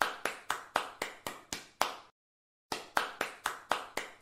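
Rhythmic claps, about four a second, each short with a quick ringing decay. The first run breaks off about two seconds in, and after a half-second pause a second run starts.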